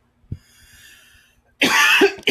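A man coughs once, loudly and suddenly, near the end, after a faint breath.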